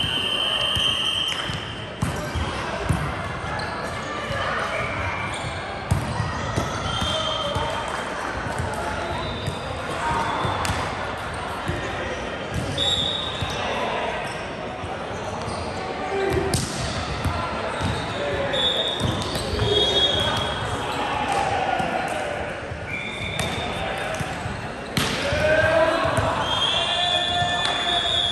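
Indoor volleyball play on a hardwood court in a large, echoing hall: sharp slaps of the ball being hit, short squeaks of shoes on the wooden floor, and players calling out.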